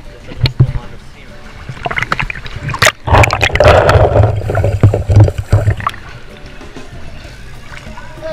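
Water splashing as a waterproof camera is dunked in the sea, followed by a few seconds of loud, muffled underwater rushing and rumbling before it settles back down.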